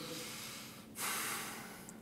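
A man's audible breath, starting about a second in and lasting nearly a second, in a pause between spoken phrases.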